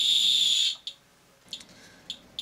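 Radalert Inspector Geiger counter's clicker sounding as one continuous high-pitched buzz, its clicks merged at over 4,000 counts a second from americium-241 alpha particles. About two-thirds of a second in, it cuts off suddenly to a few scattered clicks as a piece of paper blocks the alphas.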